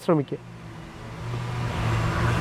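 A motor vehicle going past, its engine hum and noise swelling steadily louder.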